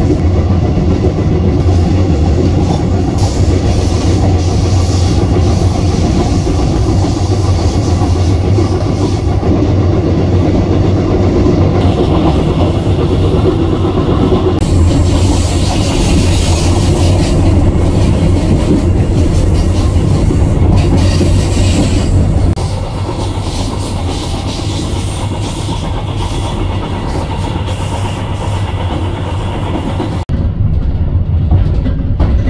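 Diesel train running along the track, a steady loud rumble of the engine and wheels on the rails with some clatter over the rail joints. It turns a little quieter about three-quarters of the way through.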